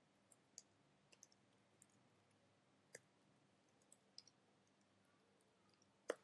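Near silence with faint, scattered computer keyboard key clicks from typing, about ten in the first four seconds.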